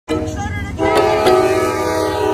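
Diesel locomotive's air horn sounding a sustained multi-note chord. It comes in much louder just under a second in, with a couple of sharp clicks.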